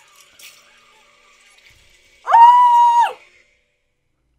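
A loud, high-pitched scream, held for under a second about two seconds in, after a stretch of faint background sound.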